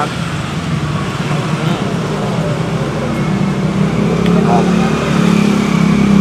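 Street traffic with a steady motorbike engine hum, growing louder about four seconds in as a vehicle comes close.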